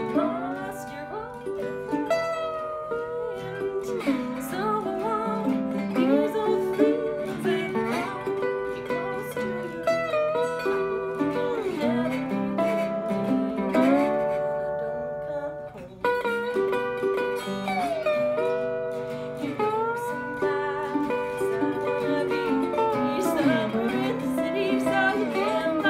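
Instrumental duet of a metal-bodied resonator guitar and a sunburst archtop acoustic guitar played together, with picked and strummed notes, several of them gliding in pitch. The music eases off briefly about two-thirds of the way through, then picks up again.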